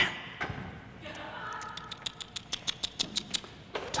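A camera shutter firing in a rapid burst: about a dozen sharp, evenly spaced clicks at roughly seven a second, stopping shortly before the end.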